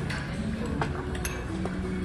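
A few light clinks of a metal spoon against a clay pot and dishes, over a steady low background.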